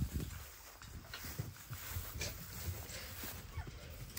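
Red foxes at play, making short calls amid scuffling and low thumps, the loudest thump right at the start.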